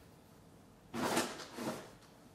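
Two short bursts of rummaging noise, objects being shifted and handled, about a second in and again a little later.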